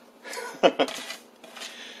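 Fresh cilantro being pushed and packed by hand into a clear plastic personal-blender cup: leafy rustling and light knocks of the plastic cup. A short, sharp voice sound comes just past half a second in and is the loudest thing.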